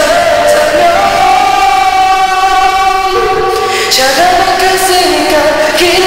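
Male voice singing a Korean pop ballad into a microphone, holding long sustained notes that step up and down in pitch, over an instrumental backing track.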